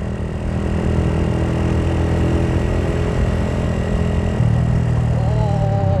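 Suzuki Thunder 125's single-cylinder four-stroke engine, stock inside but fitted with an aftermarket carburettor, running steadily under way with road and wind noise; its note gets louder about two thirds of the way through.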